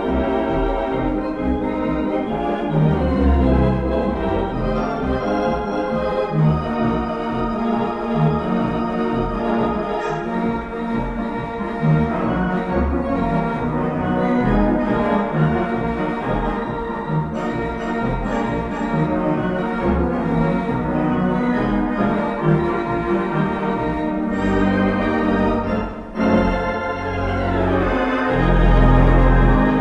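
Hybrid pipe and digital theatre pipe organ playing music: sustained chords over a moving bass line, with a short drop in loudness near the end.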